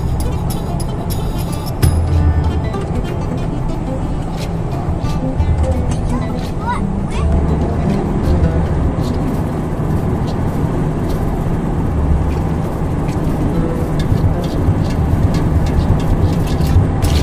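Car driving at highway speed, heard from inside the cabin: a steady low rumble of road and engine noise that swells and eases, with music and voices playing over it.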